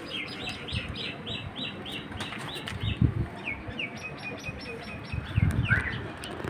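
A bird chirping in a rapid run of short, downward-sliding notes, about three a second, with a brief change of pattern partway through. A few low knocks come near the end.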